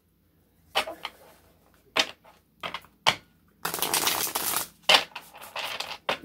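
Tarot cards shuffled by hand: separate sharp card snaps and taps, with about a second of rapid card flutter near the middle.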